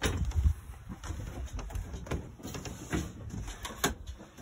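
A camper trailer's entry door being handled and footsteps stepping up into the trailer, with several sharp clicks and knocks over low thumps.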